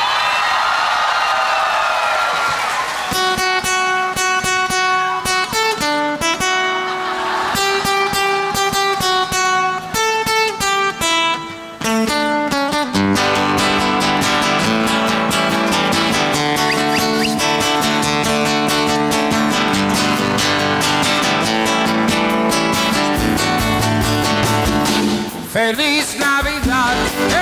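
Brief audience cheering, then an acoustic guitar picking out a single-note intro to a Christmas song. About halfway through, a fuller accompaniment with low bass notes comes in and carries on steadily.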